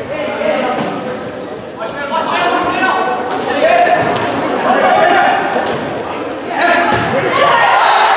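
Volleyball rally in an echoing gym: sharp smacks of the ball being hit, over spectators shouting and cheering. The crowd noise swells twice, most strongly about six and a half seconds in as the point ends.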